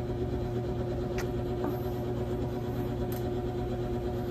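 A small motor running with a steady hum, broken by a couple of faint clicks about one and three seconds in.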